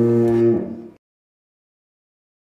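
A single low moo that slides up at its start, holds steady and dies away about a second in.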